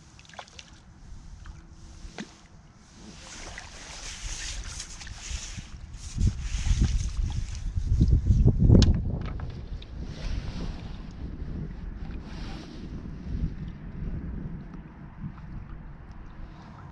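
Wind buffeting the microphone in gusts, the strongest about nine seconds in, with water splashing and net handling as a skimmer bream is drawn into a landing net.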